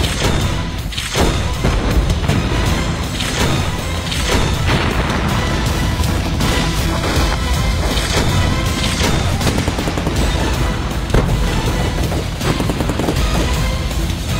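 Mortars firing and shells exploding in a staged battle soundtrack, a run of repeated booms mixed with gunfire, over background music.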